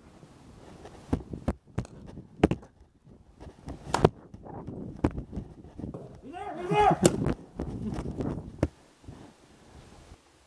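Sharp pops fire irregularly, about eight of them, from paintball markers being shot at close range. Partway through, a voice gives a short shout.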